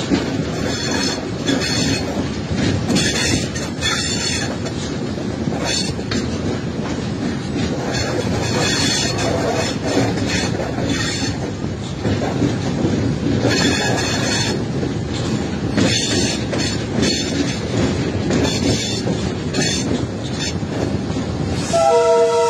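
Diesel locomotive running at speed, heard from inside its cab: a steady heavy rumble of engine and wheels on the rails, with repeated short, higher-pitched clattering bursts from the track every second or two.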